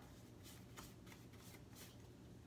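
Faint swishes of a synthetic-bristle paintbrush stroking paint onto a cabinet side panel, about five short strokes.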